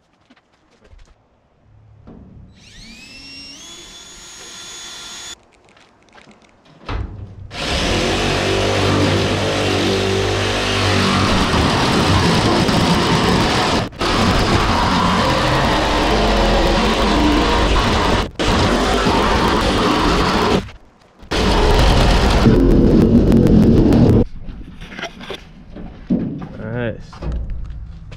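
A cordless drill spins up with a rising whine for a few seconds, drilling into the aluminium canopy wall. Then a corded power tool cuts window openings through the aluminium sheet, loud and steady for most of the rest, with three short stops.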